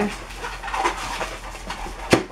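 Inflated latex modelling balloon squeaking and rubbing under the hands as it is gripped and twisted, in short irregular squeaks.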